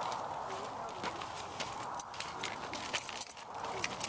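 Footsteps on a dirt path with a steady stream of light clicks and jingles as the walker moves, over outdoor background noise.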